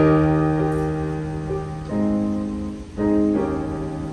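Piano playing slow sustained chords, each struck and left to ring and fade: one at the start, another about two seconds in, and two more close together around the three-second mark.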